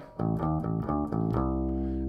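Electric bass guitar played with a plectrum, part of a funk line on the open A string: a few quick short notes, then one low note held near the end.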